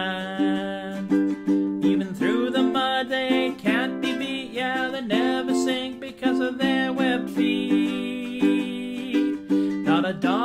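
A man singing with his own strummed ukulele accompaniment, the strums falling in a steady rhythm under the sung melody.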